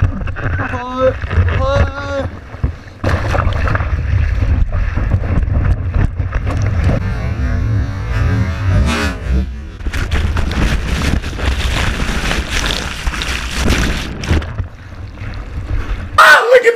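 Whitewater rushing and splashing around a board-mounted action camera while surfing, with a heavy low rumble of water and wind buffeting the microphone.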